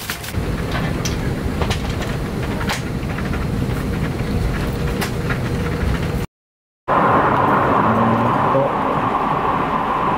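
Airliner cabin noise: a steady low rumble of engines and airflow with scattered light clicks. It drops out briefly past the middle and comes back louder, with a steady hum over the rush.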